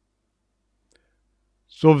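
Near silence, with one faint click about a second in; a man's voice starts just before the end.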